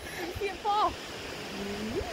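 Steady noise of waves washing on a beach, with wind on the microphone, under a couple of brief, quiet voice sounds.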